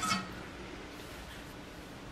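Quiet kitchen room tone: a faint, steady, even hiss. At the very start, the ring of a metal spoon clink against the pot fades out.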